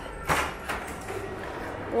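Mall hall ambience, a steady low hum, with two short knocks in the first second, the first louder.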